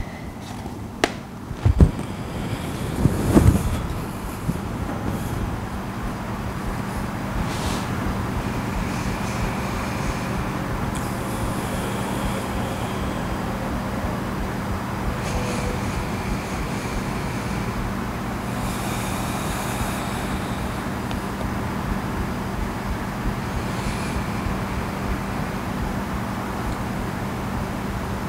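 A few soft thumps and rustles in the first few seconds as a person shifts and lowers back onto a yoga mat, then a steady low hum and rumble of background noise.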